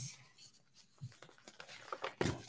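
Faint handling of a sheet of paper close to a microphone: a soft bump about a second in, then light rustles near the end.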